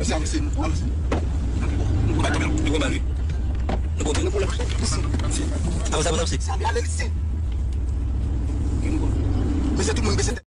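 Steady low rumble of a car driving at highway speed, heard from inside the cabin, with voices talking now and then over it.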